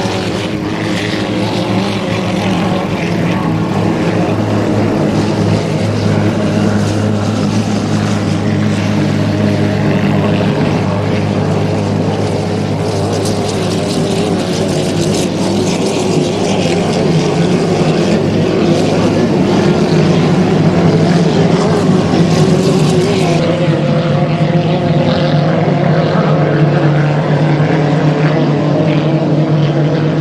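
Racing inboard hydroplane engines of the 2.5-litre class running flat out, a loud steady drone whose pitch shifts slightly as the boats race the course.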